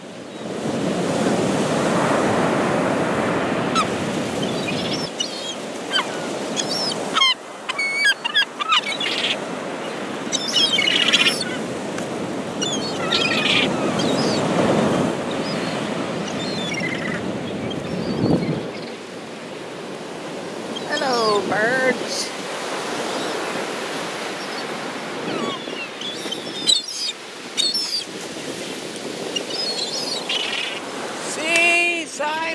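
Surf breaking steadily on the beach while a flock of gulls calls over it, with many short, bending cries scattered through.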